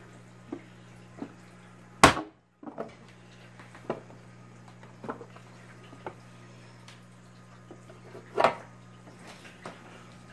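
KUUK vegetable chopper's plastic lid pressed shut, forcing a slice of dog roll through its grid blade with one loud clack about two seconds in. Then light clicks and knocks of the plastic parts being handled, with a second louder knock near the end, over a steady low hum.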